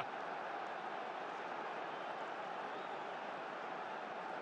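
Football stadium crowd noise, a steady, even wash of many voices with no single sound standing out.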